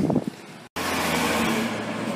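Street traffic noise: a steady, even rush that starts abruptly after a brief dropout about three quarters of a second in.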